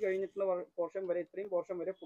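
Speech only: one person talking continuously.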